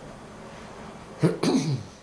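An elderly woman clears her throat once with a short cough, a sharp rasp just over a second in that falls away quickly.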